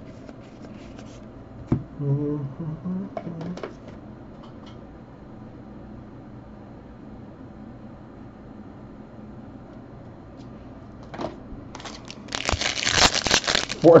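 Foil wrapper of a 2020 Bowman Jumbo trading-card pack crinkling and tearing as it is ripped open by hand, loud and crackly, starting about two seconds before the end.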